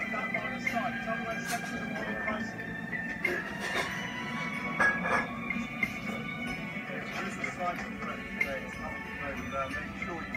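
Film soundtrack played through a television speaker: men's voices and music over background noise, with a few sharp knocks.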